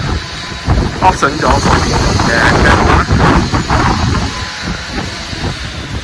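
People talking, with a low rumble in the background.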